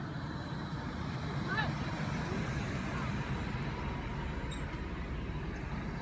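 Police Ford Expedition SUV's engine running steadily as it drives slowly along the street and pulls up close by. Two brief high-pitched squeaks come about three and four and a half seconds in.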